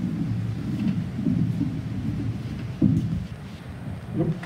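Microphone handling noise: a low, uneven rumble as the mic on its boom stand is moved and adjusted, with a sharper knock about three seconds in.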